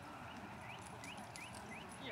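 Faint hoofbeats of a horse trotting on a sand arena, with a run of short rising chirps about three a second.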